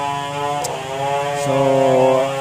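A small engine running with a steady buzzing drone at one pitch, shifting to a slightly different pitch about one and a half seconds in.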